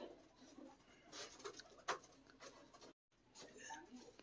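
Near silence: faint room noise with a few light rustles and ticks, broken by a moment of dead silence just before three seconds in.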